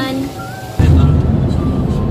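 Loud, steady low rumble of road and wind noise inside a moving car, starting abruptly about a second in.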